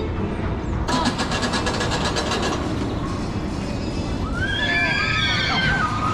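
Daredevil Dive steel roller coaster running, with a fast, even clatter from the train on the track, then several riders screaming high-pitched about four seconds in.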